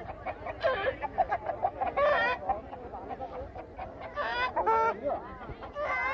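Rooster clucking: a few short calls spaced through the clip, over the murmur of a crowd.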